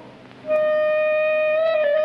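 A clarinet in the orchestral score holds one long steady note, entering about half a second in after a brief lull and dipping slightly in pitch near the end.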